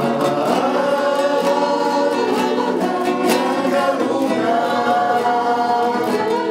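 Acoustic guitars strummed as accompaniment while voices sing a song together, with a man's voice among them.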